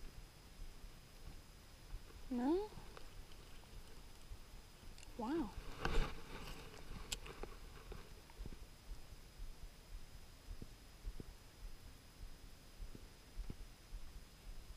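Two short, rising hums from a person's voice, like a questioning "hm?", a few seconds apart. Right after the second come a few light clicks from the spinning reel being handled, with scattered small ticks later.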